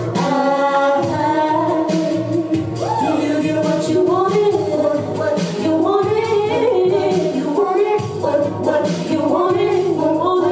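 A woman singing a pop song live into a handheld microphone over backing music with a beat.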